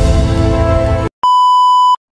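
Background music with held notes that cuts off about a second in, followed after a brief gap by one loud, steady electronic beep tone lasting under a second.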